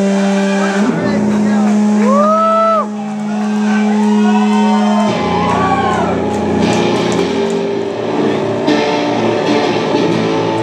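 Live rock band with electric guitars, bass and drums: a long held low note rings under notes that slide up and down for about five seconds, then the full band plays on together.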